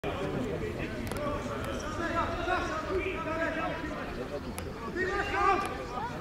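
Several voices shouting and calling out at once across a football pitch during open play, with a few short sharp knocks among them.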